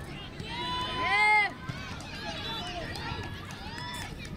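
Voices calling out during a youth football match, with one loud, high-pitched, drawn-out shout about a second in and shorter calls around it.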